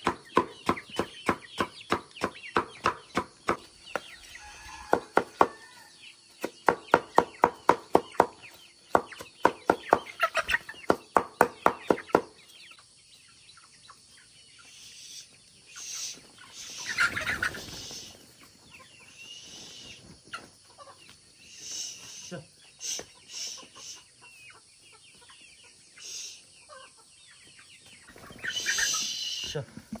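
A knife chopping banana stem in quick, regular strokes, about five a second, in runs with short breaks, stopping about twelve seconds in. After that, chickens cluck here and there, and near the end chopped feed rustles as it is poured out onto a tarp.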